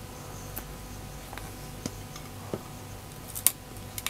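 Light clicks and taps of a metal-and-plastic phone clip and flip-mirror mount being handled and detached, with one sharper click near the end, over a low steady hum.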